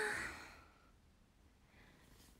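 A young woman's long sigh, 'haa', starting loud and trailing off within about a second: a sigh of relief.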